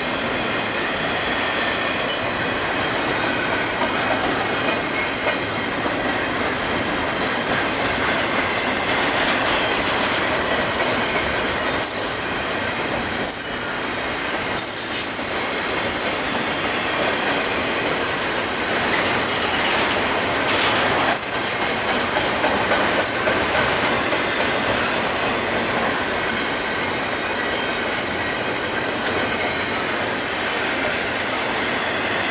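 Double-stack intermodal container train rolling past: a steady rumble and rattle of the well cars on the rails, with brief high-pitched wheel squeals every second or two.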